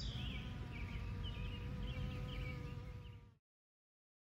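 Bumblebee buzzing in a steady hum, cutting off suddenly a little over three seconds in.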